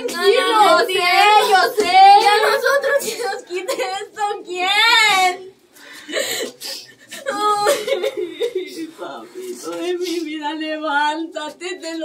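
Women weeping over a coffin: sobbing and wailing in grief, with broken, tearful words. One long high wail rises and falls about five seconds in, followed by a brief lull before the crying resumes.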